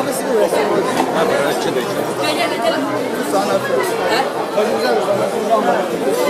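Crowd chatter: many people's voices talking at once, overlapping into a steady babble with no single clear speaker.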